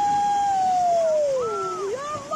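A dog howling: one long howl held at a steady pitch, then sliding down near the end.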